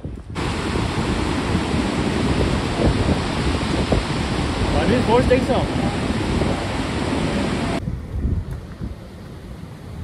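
Torrent of water pouring out of a dam's open spillway: a steady, loud rush that starts abruptly just after the start and cuts off about eight seconds in.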